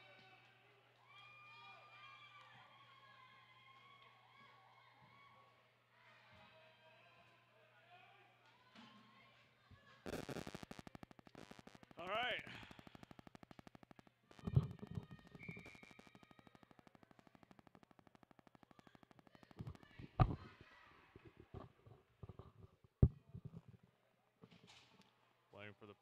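Faint ice-rink ambience: distant voices over a steady low hum, then from about halfway a busier stretch with several sharp knocks.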